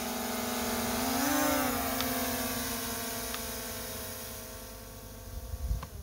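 Camera drone's propellers whining steadily as it lifts off. The pitch swells briefly about a second in, then the whine grows gradually fainter as the drone climbs away.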